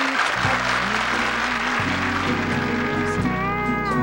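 Slow country ballad accompaniment led by acoustic guitar over bass notes, with applause fading out in the first second and a held, slightly bending note coming in near the end.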